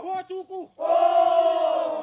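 Men's chorus singing a Polynesian dance song of Bellona in unison, without the sounding-board beats. A few short notes are followed about a second in by a loud held group shout whose pitch slides down at the end.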